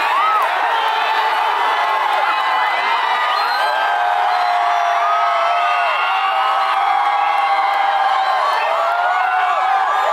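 A large concert crowd cheering and screaming, many voices yelling and whooping at once at a steady, loud level. The audience is answering the stage screen's prompts for more.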